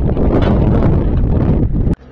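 Loud wind buffeting the camera microphone, an even low rumble with no tune in it, cut off abruptly just before the end.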